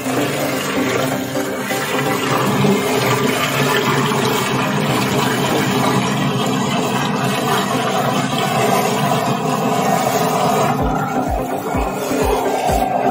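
High-speed paint mixer running in a stainless steel vessel, its blade churning a water-based primer slurry: a steady rushing, splashing noise with a low motor hum. Background music with a regular beat comes in near the end.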